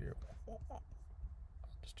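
A man speaks softly: a single word, then quiet muttering, over a steady low hum. A faint click comes near the end.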